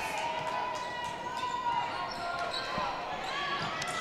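Basketball being dribbled on a hardwood gym floor, a few faint bounces, under the steady background voices of spectators in a large gym.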